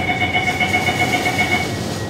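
Door-closing warning on an SBS Transit C751C metro train: a rapidly pulsing beep in several pitches that stops shortly before the doors finish shutting, over the train's steady background hum.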